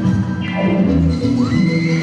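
Salsa dance track playing loud, with a falling glide about half a second in and high held tones in the second half.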